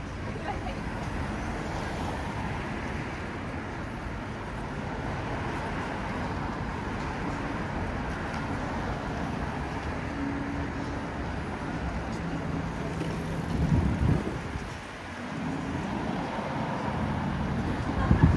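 City street traffic: a steady hum of car engines and tyres, with a passing engine hum in the middle. Two louder low swells come near the end, the last as a car drives close by.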